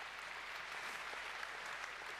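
Audience in a large hall applauding: a steady spell of clapping.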